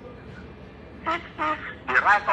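A person's voice making three short vocal sounds without clear words, starting about a second in, the last one bending in pitch.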